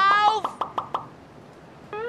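A man's loud, shouted line of film dialogue ends within the first half second, followed by a few short clicks and a brief lull. Near the end a single sustained musical note begins.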